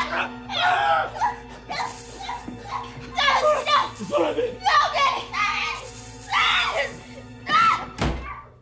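A high voice crying out in distress in about six loud bursts over a steady, dark, sustained film score.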